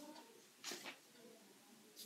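Near silence: room tone, with one brief faint hiss-like noise just under a second in.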